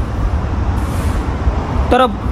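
Low, steady rumble of road traffic, with a brief high hiss about a second in. A voice starts again at the very end.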